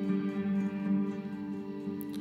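A small acoustic band playing a soft instrumental passage between sung lines: a steady held chord with acoustic guitar, violin and keyboards.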